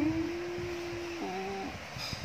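A person humming one long, steady low "hmm", which drops to a lower note a little past a second in and then stops.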